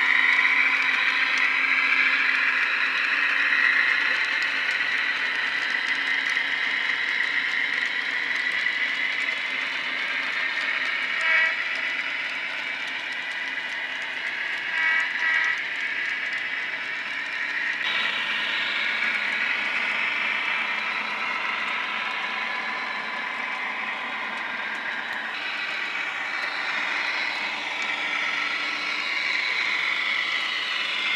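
HO scale model diesel locomotives running with DCC sound, a steady diesel engine drone from their small onboard speakers. Short horn toots sound about 11 seconds in and twice around 15 seconds.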